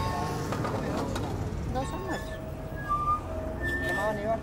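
Busy street ambience: a steady low rumble of traffic with faint, distant voices and a few brief high tones.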